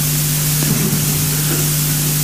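Steady electronic hiss with a constant low hum from the microphone and sound-system chain, heard in a gap in speech.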